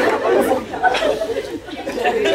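Audience laughing and chattering after a joke, the sound dying down in the second half.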